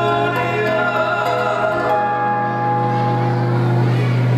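Male vocal duo singing a Spanish-language Christian song live with guitar accompaniment, holding long sustained notes in harmony over a steady low tone.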